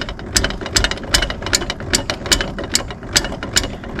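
A caravan's front corner steady leg being wound up with a crank handle, its mechanism clicking sharply and evenly, about two to three clicks a second with lighter ticks between.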